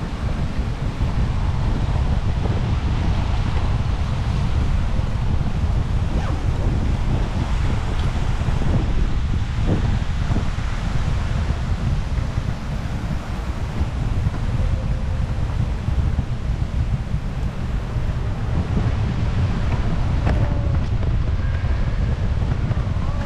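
Wind buffeting the microphone: a steady, heavy low rumble with no clear pattern.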